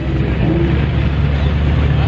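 An off-road 4x4's engine labouring under load with a steady low drone as the vehicle struggles to climb a steep, muddy slope.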